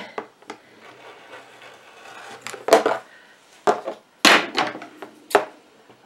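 Rotary cutter trimming fabric against an acrylic quilting ruler on a cutting mat, a faint steady rubbing for the first couple of seconds. This is followed by several sharp clacks of hard tools being handled and set down on the mat.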